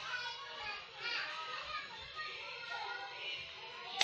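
Voices speaking or singing over background music.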